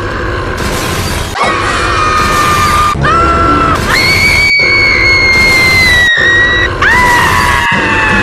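A huge, exaggerated cartoon burp: one long, loud, rasping blast with no break, overlaid by high held screams that slowly sag in pitch. It drops out for an instant about every second and a half.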